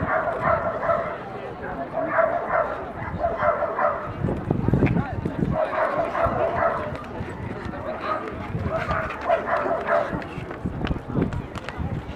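A dog barking in quick runs of short, same-pitched barks, about five bursts of a second or so each, over the murmur of a crowd.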